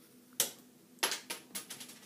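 Small plastic toy pieces clicking and tapping on a wooden table. There is one sharp click about half a second in, then a quick run of lighter clicks.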